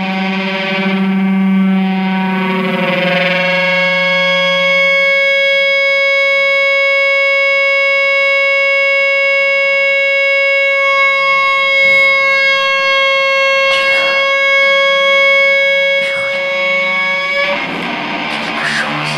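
Prepared guitar holding one long, steady drone rich in overtones. It takes over from a lower, fading tone in the first few seconds and cuts off suddenly near the end, with a few faint clicks in the second half.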